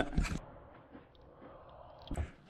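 Quiet room tone with a few soft low thumps in the first half second, then faint and fairly even.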